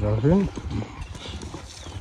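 A man's voice says a single word, then quiet outdoor background with a few faint, soft knocks.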